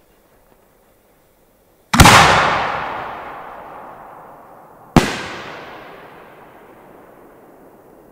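Two sharp bangs from a homemade 4-inch aerial firework shell, about three seconds apart, the first the louder. Each one rolls on in a long echo that dies away slowly.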